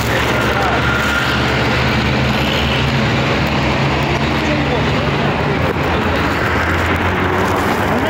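A vehicle engine running steadily at idle amid street noise, with scattered voices.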